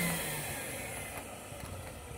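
Quantum QX 8002 water-filtration upright vacuum motor winding down after switch-off, its whine falling in pitch and fading away.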